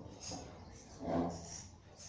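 Egg shakers played together by a percussion ensemble, crisp shaken hisses about every half second. A short, louder voice sound breaks in about a second in.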